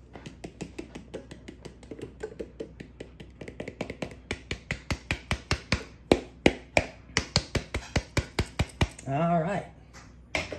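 Quick, even tapping on a lightweight plastic bowl, about five light taps a second, growing much louder about halfway through, as the bread flour is knocked out of the bowl into the bread pan.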